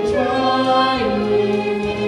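Voices singing long held notes over instrumental accompaniment, moving to new pitches about a second in.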